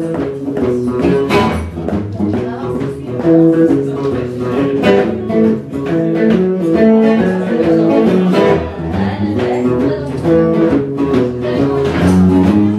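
Amplified PRS electric guitar with a piezo pickup, picked note by note and in chords over low bass notes, played as an instrumental passage.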